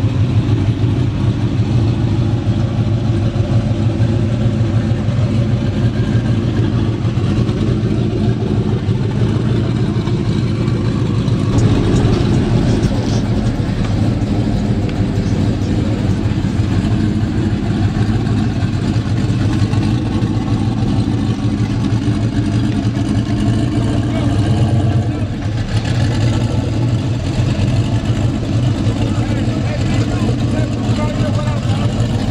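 Turbocharged Chevrolet Malibu engine idling steadily, with people talking in the background.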